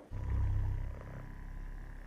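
A deep, buzzing growl-like rumble, louder in the first second and then settling lower.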